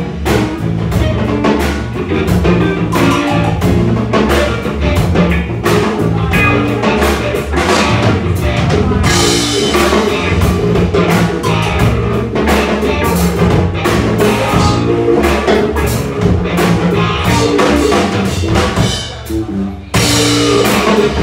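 Live band playing an instrumental improvised jam: drum kit driving a steady beat under electric guitar and low bass notes. The music thins out briefly near the end before coming back in full.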